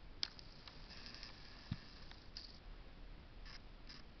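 A few faint computer-mouse clicks over quiet room tone, the sharpest just after the start, with a duller low knock a little before the midpoint.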